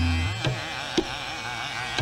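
Hindustani classical vocal music: a male voice holds a wavering, ornamented line over a tanpura drone. Tabla strokes fall about every half second, the first a deep bass stroke on the bayan that rings for about half a second.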